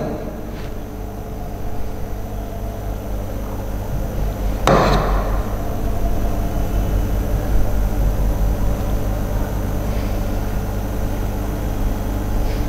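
A steady low electrical-sounding hum, with one sharp knock about five seconds in.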